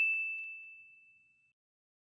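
Subscribe-button notification 'ding' sound effect: one high, bell-like tone that rings out and fades away within about a second and a half.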